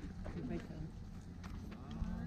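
Voices of people talking in the background, with a few light clicks.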